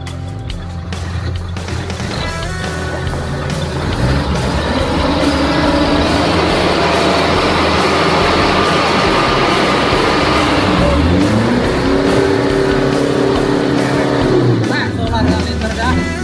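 Light dump truck's diesel engine revved up to drive the hydraulic hoist as the tipper bed rises and the wet soil load tips out. The engine gets louder about four seconds in, holds high, and its pitch swings near the end. Background music plays along.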